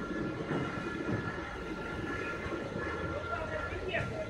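An automatic fabric spreading and cutting machine running: a steady mechanical rumble with a thin, even whine.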